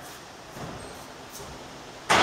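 Quiet room tone of a large warehouse: a steady, faint hiss with no distinct events.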